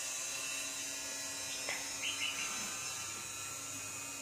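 A small electric motor's steady, faint hum with a light buzz, and a soft click about one and a half seconds in.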